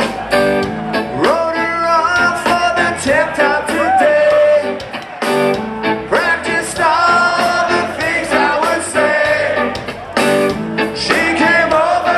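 Live ska-punk band music: a man singing lead into the microphone over his own electric guitar, with the band playing behind him, loud through the hall's PA.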